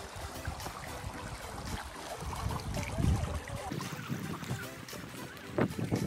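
Wind buffeting the microphone, swelling in the middle, over a running stream, with footsteps on a dirt trail and a few sharper strikes near the end; background music plays faintly underneath.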